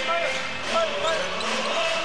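Basketball being dribbled on a hardwood court during play, with voices in the arena around it.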